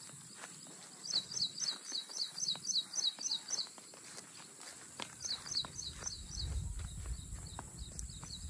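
A songbird calling repeatedly in runs of short, high, falling notes, about four a second, with a pause of a second or so between runs. Faint footsteps on grass underneath.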